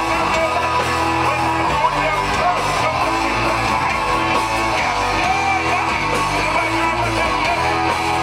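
Live rock band playing loud and without a break, electric guitars over sustained bass notes that change about every second, heard from the audience.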